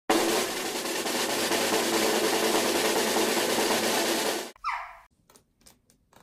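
Snare drum roll sound effect running for about four and a half seconds and cutting off suddenly, followed by a short tone that steps down in pitch, then a few faint clicks.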